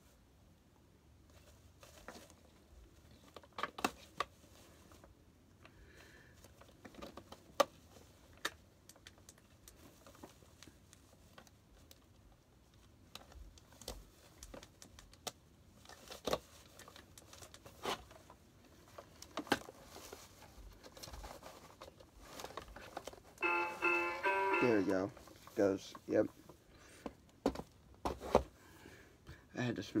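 Batteries and plastic parts of a battery-operated animated Santa figure being handled: scattered clicks and knocks. Near the end the figure's speaker gives a short burst of music that sags down in pitch as it stops.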